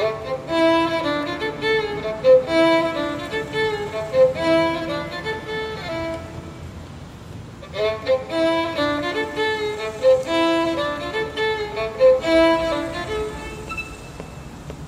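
Solo violin played with the bow: a melodic phrase of held notes, a short break about six seconds in, then the phrase played again.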